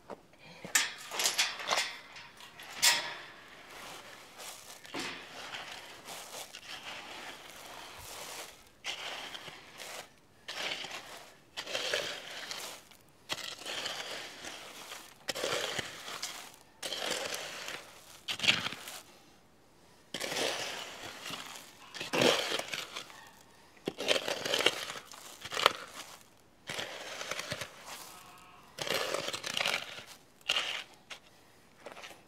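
Broken cement-block pieces knocked into place, then gritty concrete mix spread and scraped over them by hand and trowel: a few sharp knocks in the first seconds, then repeated uneven scraping strokes.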